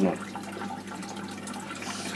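Steady splashing and burbling of water from the outlet of a running Aquael PAT Mini internal aquarium filter held at the water surface.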